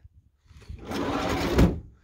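A van's sliding side door rolling along its track for about a second and closing with a low thud near the end.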